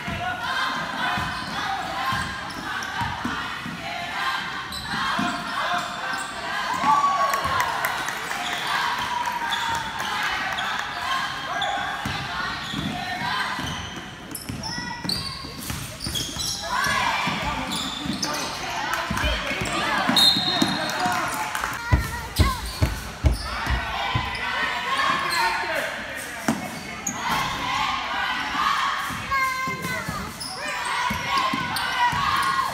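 Basketball dribbled on a hardwood gym floor during play, the bounces echoing in the hall, with a quick run of louder bounces a little past the middle. Voices of players, coaches and spectators carry on throughout.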